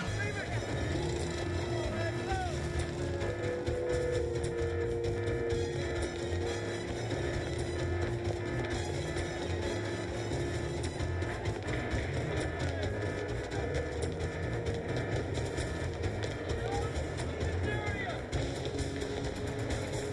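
Tense film score laid over a steady low rumble and dense noise, with a few long held tones and short sliding notes.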